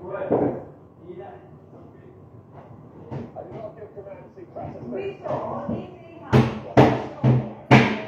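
Voices talking in the background, then four loud, evenly spaced knocks near the end, about two a second.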